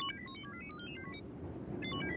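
Minicon robots chattering in rapid electronic beeps: short blips jumping between high pitches. They thin out about a second in and pick up again near the end, over a low background score.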